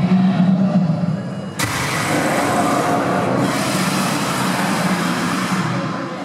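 Fire-breathing effect of the Gringotts dragon sculpture: a sudden whoosh of flame about a second and a half in, then a steady rushing hiss for about four seconds before it dies away.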